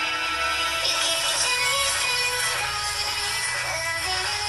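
An electronic song with synthesized vocals playing from the Realme Narzo 30 smartphone's single loudspeaker during a speaker test.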